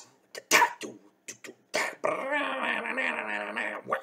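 A man vocally mimicking a rock song: a few short, sharp percussive mouth sounds, then about two seconds of sustained sung vocal imitating the tune.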